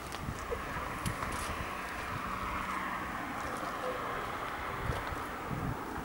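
Wind rumbling on the microphone over outdoor street noise, with a vehicle passing on the road through the middle seconds.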